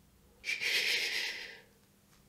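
A person hushing "shhh", one breathy hiss lasting about a second that starts half a second in and fades out.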